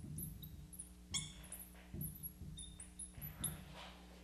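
Marker squeaking on a glass lightboard as words are written: a run of short, high squeaks with a few sharper taps of the pen stroke. A faint low electrical hum runs underneath.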